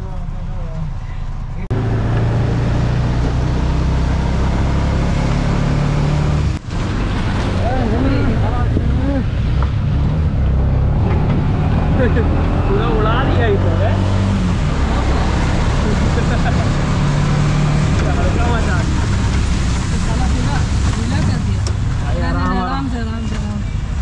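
Steady engine and road noise heard from inside a moving vehicle, with faint voices in the background.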